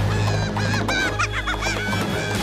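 Minions screaming and yelling in rapid, high-pitched squeaky cartoon voices, over a steady low hum of music.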